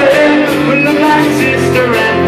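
A man singing, with a strummed acoustic guitar.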